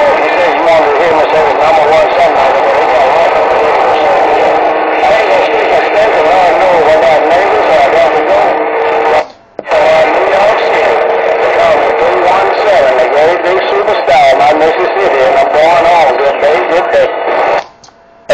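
A voice coming over a CB radio's speaker in two long transmissions, broken by a short gap about nine seconds in.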